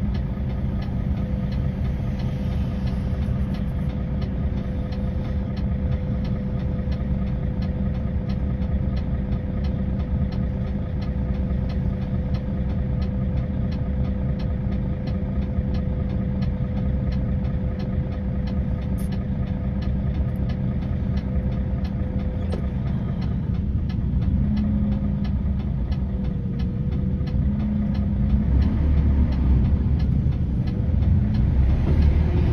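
Diesel engine of a Mercedes-Benz Actros concrete mixer truck idling steadily, heard from inside the cab while stopped. Near the end the engine gets louder as the truck begins to move off.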